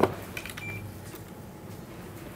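A single sharp knock at the very start, then quiet room tone with a low hum and one brief faint beep about two-thirds of a second in.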